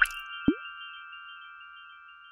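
Logo-sting sound effects: a short bright swish, then a single cartoon-like plop about half a second in, over bell-like chime notes that ring on and slowly fade.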